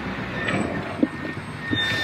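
Rally car engine running at low speed, heard from inside the cabin, with a sharp knock about a second in.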